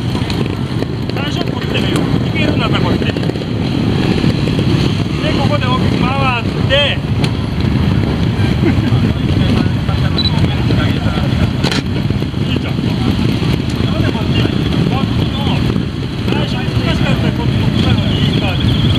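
Small trials motorcycles running in the background, a steady low engine noise under the talk of an instructor and children.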